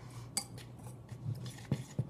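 Wire whisk stirring dry flour and spices in a stainless steel bowl: quiet scraping with a few light clinks of the wire against the metal.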